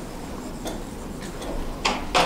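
Light clicks of a plastic stylus tapping on an interactive touchscreen board: a few faint ticks, then a sharper click near the end, over a steady low room hum.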